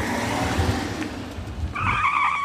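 A BMW 520 car driving off, with steady engine and tyre-on-road noise. Near the end the tyres squeal as it takes a bend.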